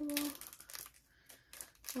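Small plastic package crinkling and rustling as it is worked at by hand and proves hard to open: a few quick crinkles in the first second, then only faint rustling.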